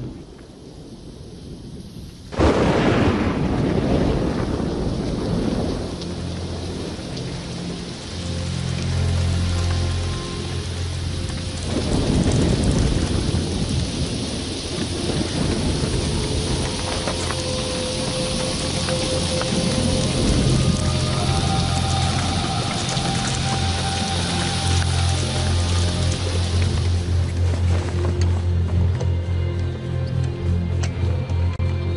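A thunderstorm: a sudden loud crack of thunder about two seconds in, then heavy rain, and a second rolling peal of thunder near the middle.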